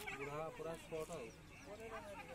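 Faint voices of people talking in the background.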